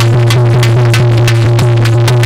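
Loud instrumental music with no singing: a fast, steady beat of about four to five strikes a second over a held low bass drone and a sustained note.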